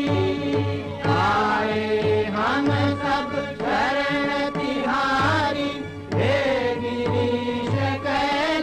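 Devotional chant sung to a melody over a steady drone, with low drum beats recurring through it.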